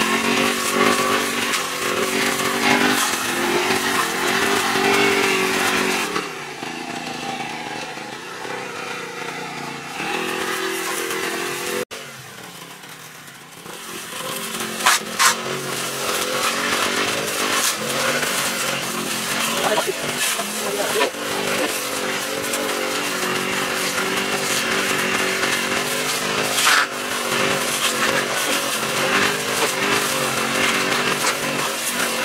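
Petrol brush cutter's small engine running under load as its line head cuts weeds and grass, the revs rising and falling. It drops to lower revs about six seconds in, cuts out abruptly just before halfway, and comes back about two seconds later.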